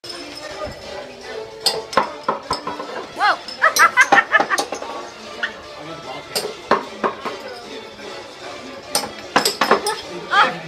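Glass beer bottles clinking and knocking against each other and a small wooden table as they are handled, a series of sharp clinks that come thickest near the end.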